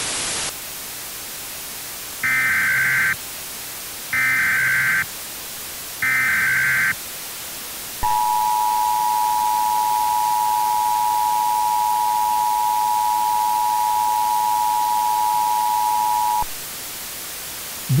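A brief burst of static, then three Emergency Alert System SAME header bursts, each just under a second of shrill digital data tone, about two seconds apart. Then the EAS two-tone attention signal (853 and 960 Hz sounding together) holds steady for about eight seconds and cuts off suddenly. A faint hiss runs under it all.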